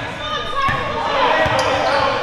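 Basketball dribbled on a hardwood gym floor: two thuds about a second apart, among indistinct players' voices.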